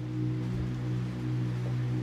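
Electronic keyboard holding a steady low chord.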